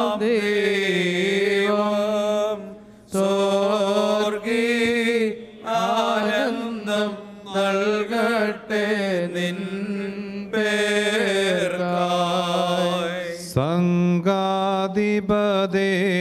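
Men's voices chanting a slow liturgical hymn, with long held notes sung in phrases and short breaks between them.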